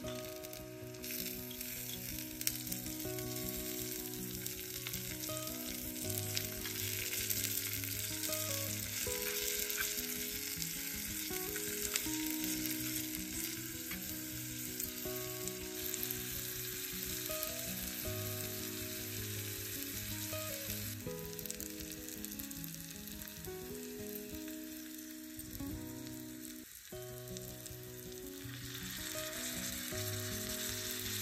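Sliced onion and diced vegetables sizzling in hot oil in a miniature steel kadai over a small flame, with a steady hiss, now and then stirred with a small spoon.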